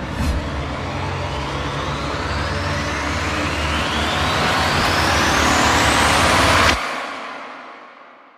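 Sound-design riser: a noisy whoosh climbing steadily in pitch over a low rumble, building for nearly seven seconds, then cutting off abruptly and fading out.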